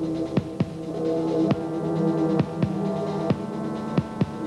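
A gothic rock band playing live: a held, droning chord with slow drum strikes that fall in pitch after each hit, mostly in pairs about a second apart.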